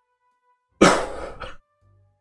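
A short, breathy vocal burst from one person, a little under a second long and starting just before the middle: a huffed throat-clear or stifled laugh.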